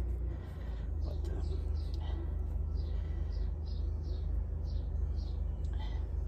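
A bird chirping repeatedly, one short high note about twice a second, over a steady low rumble.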